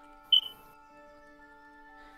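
Soft background music of steady, sustained tones. A single short, high ping sounds about a third of a second in.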